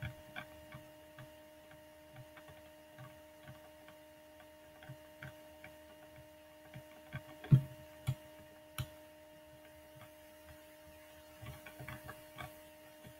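Steady electrical hum made of several pitched tones, with scattered soft clicks and knocks at irregular intervals, the loudest about seven and a half seconds in.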